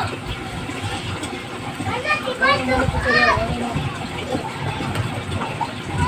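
A child's high voice, a few short calls or squeals about two to three and a half seconds in, over steady background noise.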